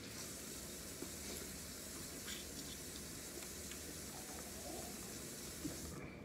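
Quiet, steady background hiss, with a few faint clicks of crawfish shells being handled and eaten.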